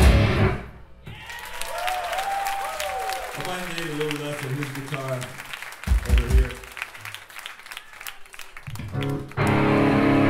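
A crust punk band's full-volume song cuts off about half a second in, leaving crowd cheering, clapping and shouting over whining guitar amp feedback and a couple of stray drum and bass hits. Near the end the band crashes back in at full volume.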